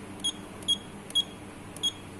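Control panel of a Juki LK-1900A computerised bartack machine giving four short, high beeps, one with each key press, while a setting value is stepped on the display.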